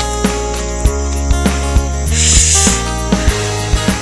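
Background music with a bass line and a regular percussive beat, with a brief rushing hiss about two seconds in.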